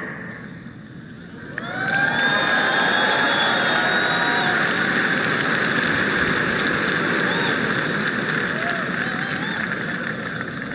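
Large audience applauding with cheering, starting about a second and a half in and then going on steadily.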